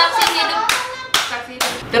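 Hand claps, about four sharp ones spread across two seconds, among voices.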